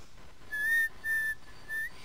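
A person whistling through pursed lips: two short held notes at the same pitch, then a brief upward-sliding note near the end.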